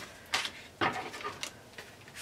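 Card stock and patterned paper being picked up and moved on a cutting mat: a few short, sharp papery rustles and taps.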